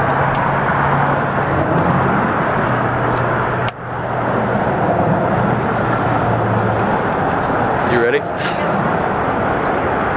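Steady outdoor traffic noise with a low engine hum that fades out about seven seconds in. The sound drops out briefly near four seconds, and a short wavering squeak comes about eight seconds in.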